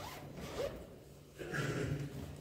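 A short rasping rustle, fainter about half a second in and louder near the end.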